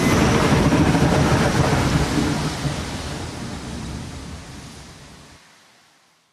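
The song's backing track ends as a dense, noisy rumble with hiss. It fades out steadily and is gone by about five and a half seconds in.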